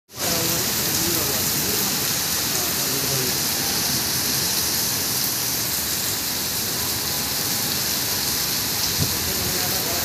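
Heavy rain pouring steadily onto a paved driveway and the surrounding foliage, an unbroken hiss. A single brief knock comes about nine seconds in.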